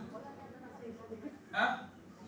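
A pause in a man's speech: low room tone through the microphone, broken about one and a half seconds in by one brief, sharp vocal sound.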